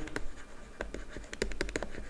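A stylus writing on a pen tablet, making quick irregular taps and scratches as the words are written out.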